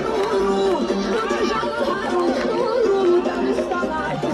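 Large crowd of men shouting and chanting together in celebration, many overlapping voices, with music playing underneath.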